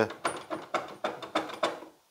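Table-lift crank on the column rack of a pillar drill, turned by hand, giving a quick run of metallic clicks, about five or six a second. The mechanism has broken apart and does not work.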